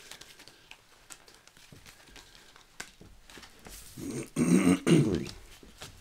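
Faint soft ticks of tarot cards being handled, then a man clearing his throat loudly, a rasping, pitched throat-clear about four seconds in.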